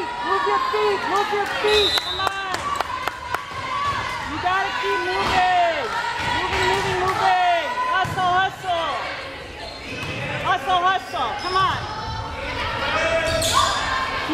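Volleyball rally in a large gym: sharp slaps of the ball being struck, with girls' shouts and calls from players and spectators throughout.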